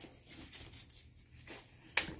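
Faint rustling and rubbing of the white protective wrapping as it is unwound from a handbag strap, with one sharp click near the end.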